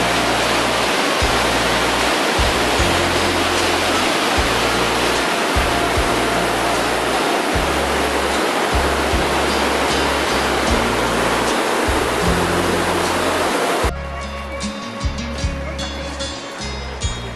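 Whitewater mountain stream rushing over boulders: a very loud, steady roar of water, with background music underneath. The water noise cuts off abruptly near the end, leaving only the music.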